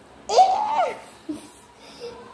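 A young girl's short, high-pitched laugh, starting about a quarter second in and lasting about half a second.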